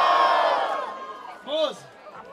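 Crowd of young people cheering and shouting together as a noise vote for one MC in a freestyle rap battle, loudest at the start and dying away within about a second. About a second and a half in, a single voice gives a short shout that falls in pitch.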